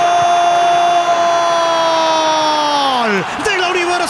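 A sports commentator's drawn-out goal call: one long shout of "gol" held on a steady pitch, which slides down and breaks off about three seconds in. Stadium crowd noise runs beneath it.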